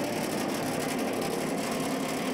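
A machine's motor running steadily with a low hum.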